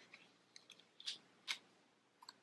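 Paper stickers being peeled from their backing sheet and pressed onto a planner page by hand: several short, faint crackles and ticks, the loudest about one and a half seconds in.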